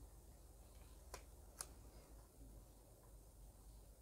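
Near silence with two faint clicks about half a second apart, a little over a second in, from tarot cards being handled on a tabletop.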